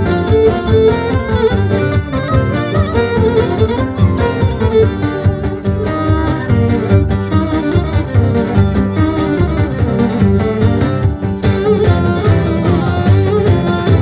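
Cretan folk ensemble playing an instrumental syrtos passage: bowed Cretan lyra carrying the melody over mandolin, laouto, guitar, bass guitar and frame drum keeping a steady dance rhythm.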